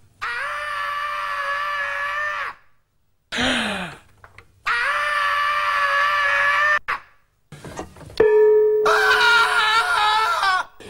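A man screaming in long held screams at a nearly steady pitch, each about two seconds, with gaps between; the third begins near the end and runs on. Short falling groans come between the first two.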